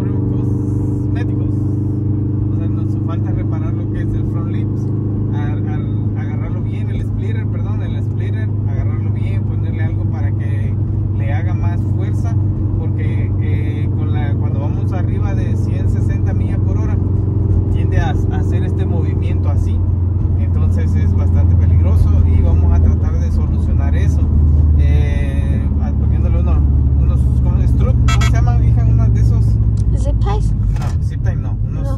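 Subaru's engine and road noise heard from inside the cabin while driving, a steady low drone that grows louder about two-thirds of the way through.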